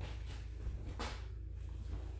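A steady low hum with a faint, brief swish of movement about a second in, as a long sword is brought round in a half-sword strike; no impact on the pell is heard.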